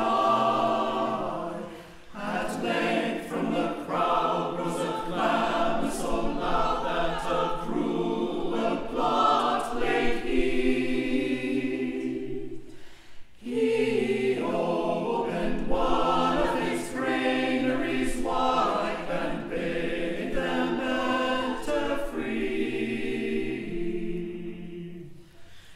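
Mixed choir of men's and women's voices singing unaccompanied (a cappella) in several parts, with brief breaks between phrases about two seconds in and about thirteen seconds in.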